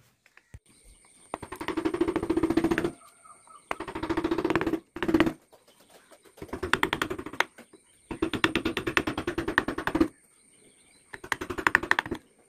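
Carving chisel being tapped rapidly into teak wood, in about six bursts of quick strikes, each lasting a second or two, with short pauses between them.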